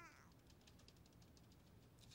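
Near silence: faint room tone, opening with the trailing end of a drawn-out spoken word.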